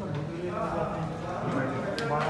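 Indistinct men's voices talking.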